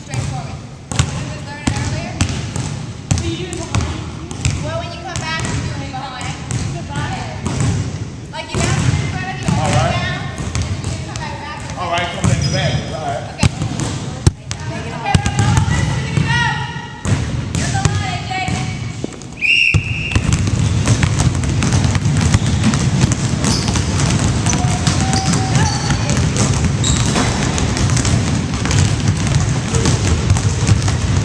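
Basketballs bouncing on a hardwood gym floor amid indistinct voices. About two-thirds of the way in, the sound changes abruptly to a louder, denser clatter of several balls being dribbled at once.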